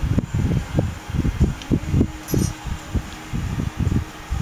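Wind buffeting the microphone: irregular gusts of low rumble, with a faint steady hum underneath.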